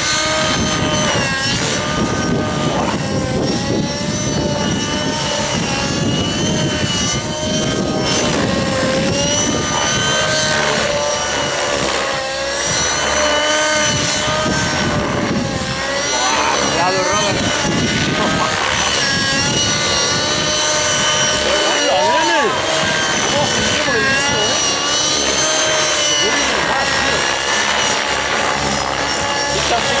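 Radio-controlled model helicopters flying aerobatics: a loud engine-and-rotor whine that rises and falls in pitch again and again as they manoeuvre, over a low rushing of rotor wash.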